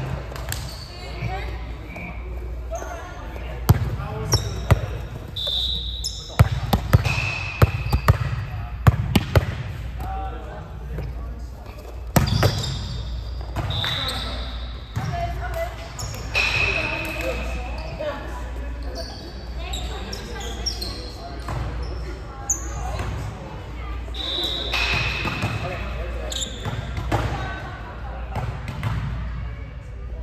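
A volleyball match in a large echoing gym: a ball smacking and bouncing, with a run of sharp hits in the first third and one more a little later, and brief high squeaks of sneakers on the court scattered throughout.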